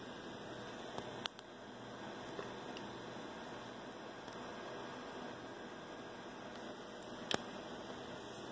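Faint steady hiss with a low hum underneath, broken by a few brief faint clicks, one about a second in and one near the end.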